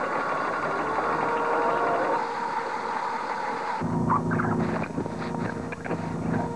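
Deck-work sounds aboard a wooden sailing schooner: squealing and squeaking over a busy background. About four seconds in, this gives way abruptly to a steady low hum with a few light knocks.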